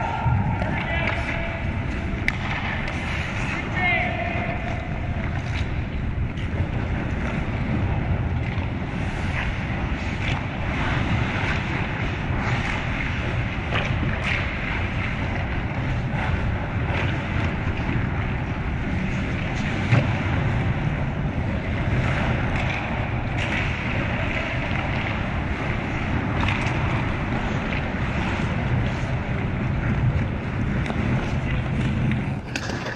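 Ice hockey rink ambience heard from behind the net: a steady rushing noise, with a few shouts in the first seconds and scattered sharp knocks, the loudest about twenty seconds in.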